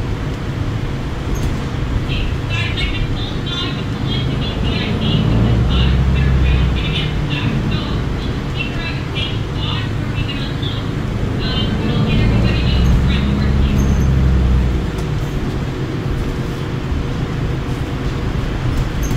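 Interior running noise of a New Flyer XDE60 diesel-electric hybrid articulated bus under way: steady drivetrain and road noise that swells louder twice, about five seconds in and again about twelve seconds in.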